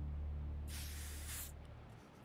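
Aerosol shaving gel hissing out of a pressed can nozzle into a hand: one short hiss, under a second long, about halfway through.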